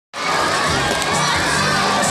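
A crowd of young children cheering and shouting all at once.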